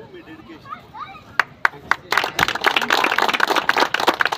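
A group of people applauding: a couple of single claps about a second and a half in, then steady clapping by many hands from about halfway through.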